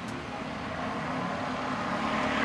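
Steady low background rumble with a faint steady hum, growing slightly louder.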